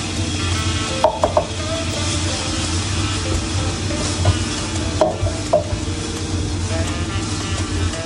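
A spatula stirring and scraping food frying in a non-stick pan, with sharp clinks against the pan about a second in and again about five seconds in, over a steady sizzle.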